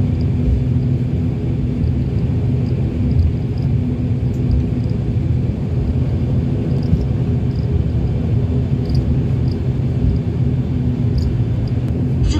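ATR 72 twin-turboprop engines and propellers heard from inside the cabin while the aircraft taxis: a steady drone with a low hum.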